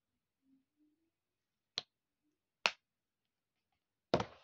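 Two sharp, short clicks a little under a second apart from a plastic skincare squeeze tube being handled, typical of its flip-top cap snapping. The rest is near silence.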